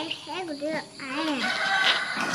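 A rooster crowing, a long held call that begins about one and a half seconds in.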